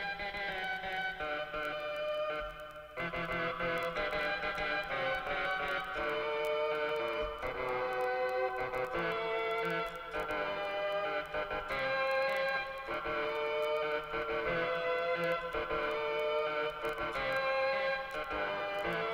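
Casio CTK-3000 keyboard playing a low-fidelity user-sampled sound (8 kHz, 8-bit), pitched up an octave. Several notes sound at once as chords, changing every second or two, with faint clicks throughout.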